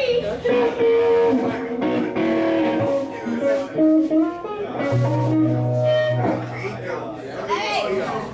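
Electric guitars playing single held notes and short phrases, without drums. A low bass guitar note is held for just over a second about five seconds in, and voices talk over the playing.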